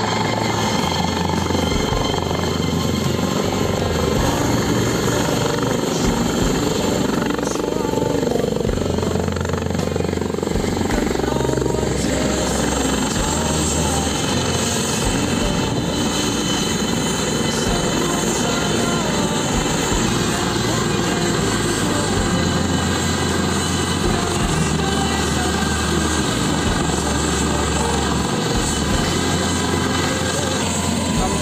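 Helicopter turbine and main-rotor noise from a twin-engine Eurocopter AS365 Dauphin as it hovers in, touches down and keeps running on the ground, with music playing over it.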